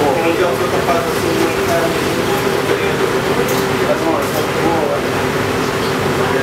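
Kitchen ambience: a steady ventilation hum under indistinct background voices, with a couple of brief clicks around the middle.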